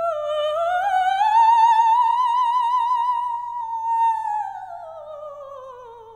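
A woman's operatic voice sustaining one long note with wide vibrato. It rises slowly to a loud peak, then glides down and fades near the end.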